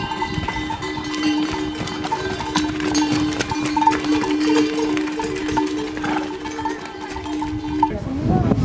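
Neck bells on a train of pack ponies and mules ringing as they trot past, with a steady ringing tone under repeated short jingles, and hooves clip-clopping on a stone trail.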